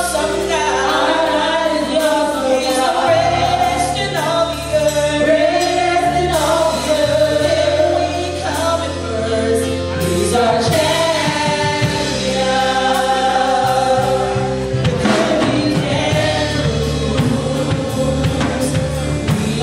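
Live gospel worship music: several singers with a band, over held bass notes that change every few seconds.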